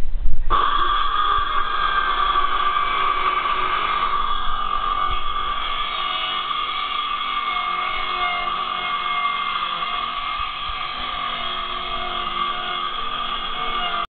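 Handheld circular saw running and cutting through a board, a steady high whine that starts about half a second in and holds level.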